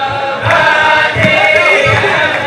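A large group of men singing a Chassidic niggun together, with low thumps keeping the beat a few times a second.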